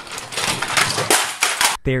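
A battery toy train running on plastic track, a dense clicking, rattling clatter lasting about a second and a half. It stops abruptly near the end as a man's voice begins.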